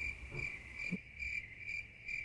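Cricket chirping sound effect: a steady high trill pulsing about four times a second, filling a pause as the stock 'crickets' gag for an awkward silence.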